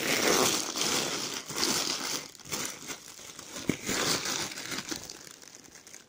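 Plastic bin bag and Doritos crisp packets crinkling and rustling as a hand rummages among them, busiest in the first couple of seconds and tailing off toward the end.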